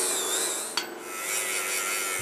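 Angle grinder running with a high, wavering whine as its disc cuts through layers of duct tape and plastic wrapped on a fire hydrant, with a short break and a click a little under halfway through.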